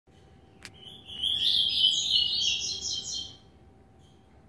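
A young caged double-collared seedeater (coleiro) singing one fast phrase of high notes lasting about two and a half seconds, starting about a second in, after a faint click.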